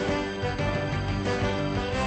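Instrumental film soundtrack music: sustained chords over a steady bass line.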